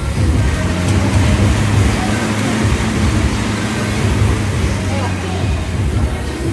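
Assault air bike's fan spinning fast under a hard pedalling sprint: a steady rushing whoosh of air.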